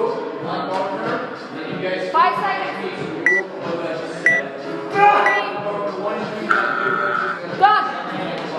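Background voices and music in a large gym, with three short electronic beeps one second apart about halfway through.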